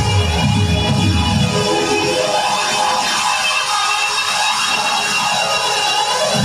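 Electronic dance music played from a DJ mixer in a live set. About two seconds in the bass and kick drop out, leaving only the higher layers with sweeping sounds, a build-up before the bass comes back.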